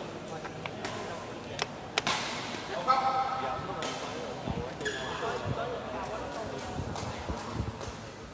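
Badminton rackets striking a shuttlecock in a rally: a handful of sharp hits in the first half, the loudest about three seconds in, with voices in the hall behind.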